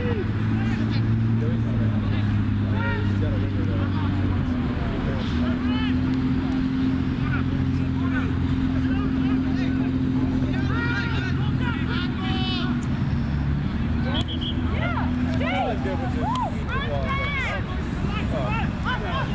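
Steady low drone of a motor vehicle's engine running. Its pitch steps up about four seconds in and drops back near fourteen seconds, while players' distant shouts come through over it.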